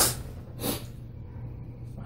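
A single short, sharp breath through the nose, a sniff or snort, about half a second in, over a faint steady low hum.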